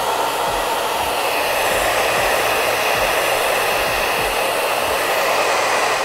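Hair dryer running steadily, blowing air onto the dampened latex palm of a goalkeeper glove to dry it.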